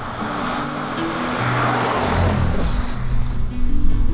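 Background music over a vehicle going past close by on a highway: a rushing swell of tyre and engine noise that peaks about a second and a half in, followed by a low rumble.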